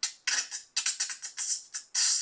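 Beatboxed hi-hats: a quick run of crisp, hissy mouth ticks, roughly five a second, with short gaps between them.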